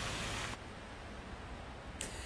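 Tyres hissing on a wet, slushy road as a car passes, cutting off suddenly about half a second in, followed by faint steady background noise.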